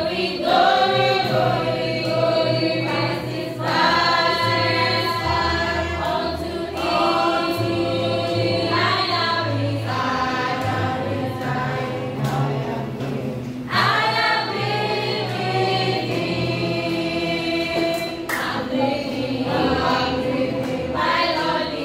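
A youth choir of children and teenagers singing a church song together, young boys' and girls' voices in a group.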